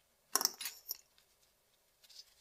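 A quick cluster of light metallic clinks, like small steel cuticle scissors being set down on a hard surface, lasting about half a second.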